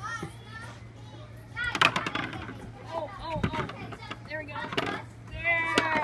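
Young children's high voices calling out and chattering in play, with a sharp tap about two seconds in.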